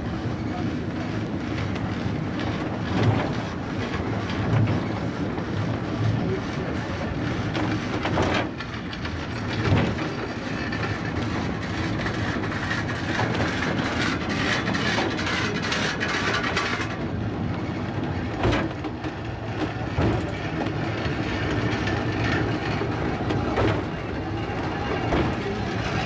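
Cable-hauled funicular car rolling along its rails, with a steady rumble and a knock roughly every second and a half. A higher-pitched whine joins the running noise about halfway through and stops a few seconds later.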